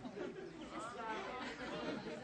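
Indistinct chatter: several people talking and calling out over one another, with no single clear voice.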